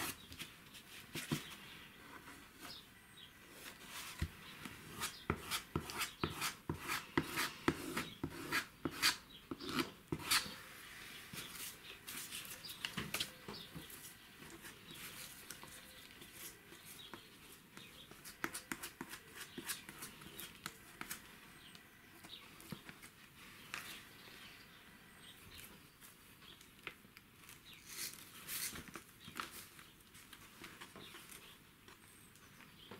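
Torn paper being glued onto a wooden board: a brush scratching and dabbing glue over the paper, paper crinkling and being rubbed flat by hand, with many short scratchy strokes and small taps, busiest in the first ten seconds and again near the end.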